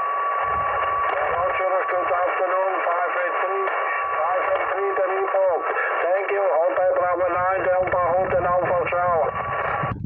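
Received single-sideband voice from a Yaesu FT-817 transceiver's speaker: a distant station's thin, narrow-band speech under steady receiver hiss, with a faint steady whistle at one pitch. The voice comes through more clearly in the second half.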